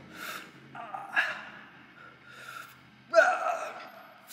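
A man breathing hard from weightlifting exertion: several sharp gasping breaths, then a loud strained grunt of effort about three seconds in.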